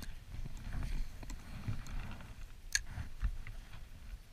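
A spinning rod and reel being cast, heard as rumbling handling noise and wind on the camera microphone, with scattered small clicks from the reel and rod. The sharpest click comes a little under three seconds in.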